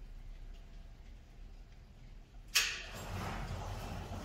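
Sandpaper rubbed by hand on a painted metal engine badge. It is faint at first, then comes a sudden rush of rubbing noise about two and a half seconds in, which eases and carries on more softly.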